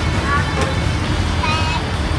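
Roadside street ambience: a steady low rumble of passing traffic, with faint voices in the background.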